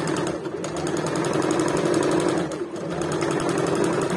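Electric sewing machine running steadily as it stitches a seam, with a fast, even stitching rhythm. It eases off briefly about two-thirds of the way through, then picks up again.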